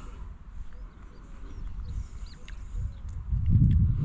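Wind rumbling on the microphone, louder near the end, with a few faint high chirps.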